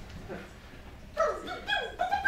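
Quiet room noise, then about a second in a run of short, high-pitched vocal sounds with sliding pitch starts up and keeps going.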